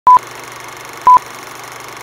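Film-leader countdown sound effect: a short, loud beep at one steady pitch once a second, twice here, over a steady hiss between the beeps.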